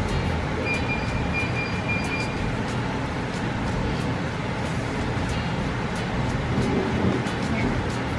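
Wire whisk beating thin ube crepe batter in a stainless steel bowl: a steady wet swishing, with repeated clicks of the wires against the metal bowl.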